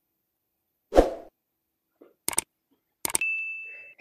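Sound effects of a YouTube subscribe-button animation: a soft pop about a second in, a couple of quick clicks, then a high bell ding that rings for under a second.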